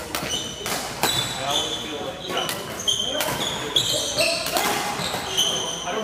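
Badminton rally in a large hall: racket strings striking the shuttlecock with sharp cracks every second or so, court shoes squeaking on the hardwood floor, and players' voices in the background.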